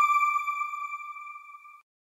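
Electronic ping of an end-card logo sting: a single bright tone with ringing overtones, fading steadily and dying out near the end.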